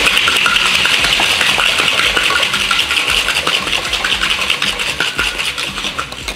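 Ice rattling hard inside a metal cocktail shaker being shaken: a loud, fast, steady clatter that eases slightly near the end.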